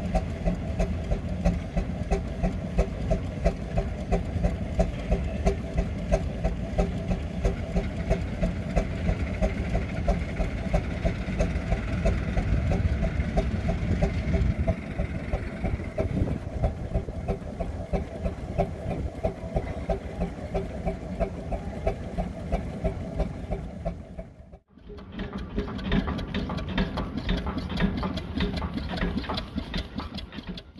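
Steam engines running with a steady, rhythmic exhaust chuff: a 10 hp Marshall and Sons portable steam engine and a small vertical steam engine. A short drop-out about 24 seconds in, then small vertical steam engines chuffing on.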